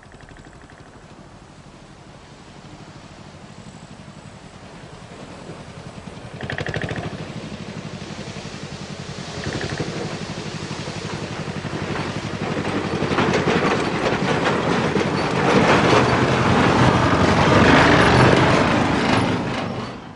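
A vehicle engine running with a fast, even pulse, growing steadily louder as it comes closer. There is a brief higher tone about six seconds in, and the sound drops away quickly at the very end.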